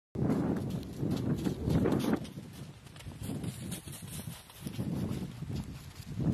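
Footsteps of Adélie penguins crunching and patting on packed snow as a line of them waddles close by, loudest in the first two seconds and again near the end.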